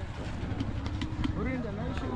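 Quiet voices of people talking in the background over a low, steady rumble.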